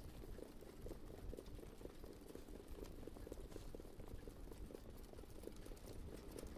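Faint hoofbeats of a field of standardbred trotters moving behind the mobile starting gate: many quick, irregular hoof strikes over a low rumble.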